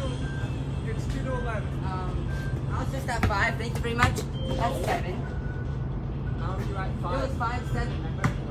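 A basketball bouncing once on pavement about four seconds in, amid indistinct young voices calling out, over a steady low hum.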